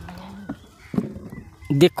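A pause in a man's speech into a handheld microphone, with only faint background sounds; his speech resumes loudly near the end.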